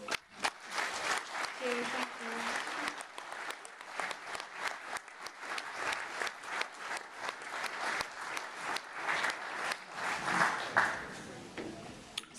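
Audience applause in a hall, starting right as the song's last guitar and mandolin notes die away, with a few voices in it, then thinning out near the end.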